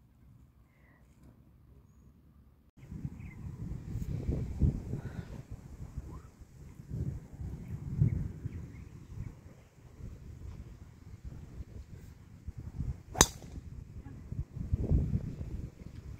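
A single sharp crack of a golf club striking a ball off the grass, a little after the middle. A low, gusting wind rumble on the microphone runs under it from about three seconds in.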